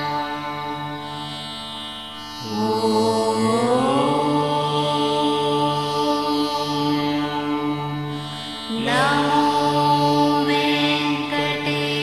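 Indian devotional background music: a steady drone under long held melody notes, which glide upward into new sustained notes about two and a half seconds in and again near nine seconds.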